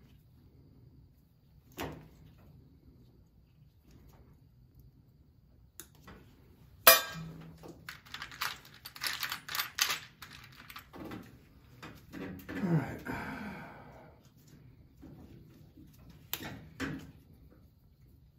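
Irregular clicks, taps and knocks of hands working wires and a tool at a boiler's switching relay. The loudest is a single sharp knock a little over a third of the way in, followed by a quick run of clicks.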